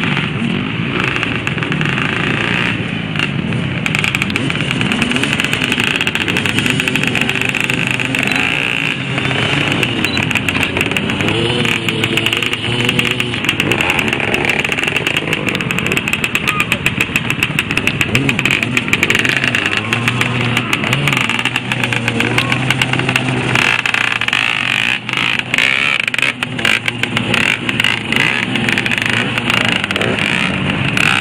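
Several off-road dirt-bike engines revving hard, their pitch rising and falling over and over as the bikes struggle through deep mud.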